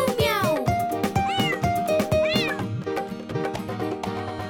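Bouncy children's-song backing music with a steady beat, with a cartoon cat meowing a few times over it.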